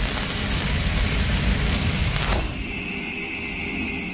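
Cinematic logo-sting sound effects: the rumbling, crackling tail of a heavy impact, a sharp swish about two seconds in, then a steady high ringing tone over a low rumble.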